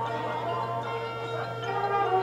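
A high school marching band's halftime show music in a soft passage: several held, ringing tones, bell-like, with a steady low hum underneath.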